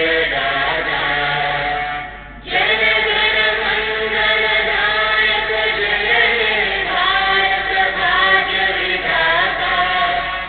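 A small group of girls singing together into a microphone, holding long sung phrases, with a short break for breath about two seconds in.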